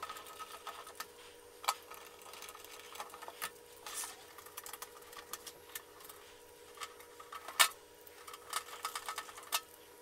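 A screwdriver driving screws into the sheet-metal top cover of a Sony CD changer, with hands handling the cover: irregular small clicks and metal knocks, the sharpest knock about three quarters of the way through, over a faint steady hum.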